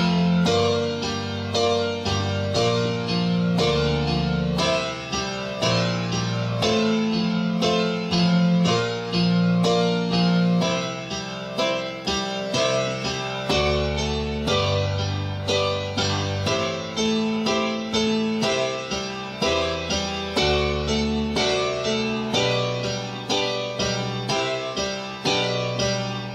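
Digital keyboard's piano voice playing a slow passage of steadily repeated chords, opening on octave F chords in the right hand over octave F's in the bass. The bass note moves to new chords every few seconds.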